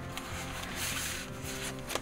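A paper record sleeve rustling as it is slid out of an album jacket, over quiet background music.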